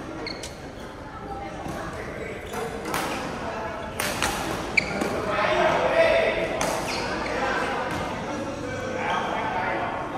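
Badminton rackets striking a shuttlecock in a fast doubles rally: several sharp hits at irregular intervals, echoing in a large hall, with players' voices in the background.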